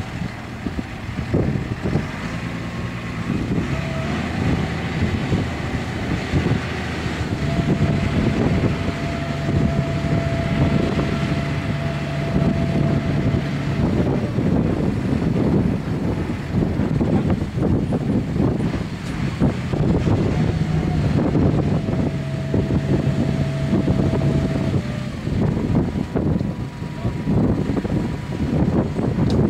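Deutz-Fahr tractor engines running under load while pulling and running a Dewulf trailed harvester, its webs and elevator chains rattling steadily. A steady engine hum stands out twice for several seconds.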